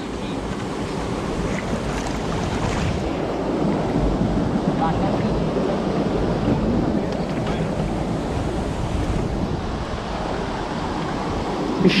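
Steady rushing and sloshing of water as a large fine-mesh shrimp net is pushed through shallow river water along the bank.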